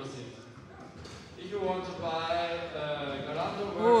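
Foosball in play: the ball knocking against the plastic players and rods during a pass, under a man's voice, with an "Oh" near the end.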